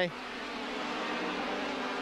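Formula 3000 racing cars' engines heard on a race broadcast as a steady, high drone with a haze of noise, growing slightly louder.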